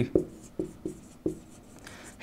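Marker writing on a whiteboard, about four short separate strokes.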